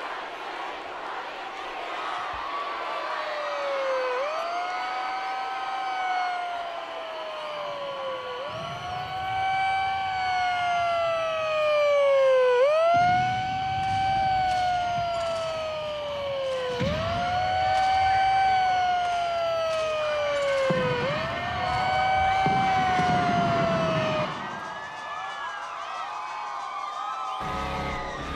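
A siren wailing, each cycle a quick rise in pitch followed by a slow fall, repeating about every four seconds over a low rumble. It fades out a few seconds before the end, and low music comes in right at the end.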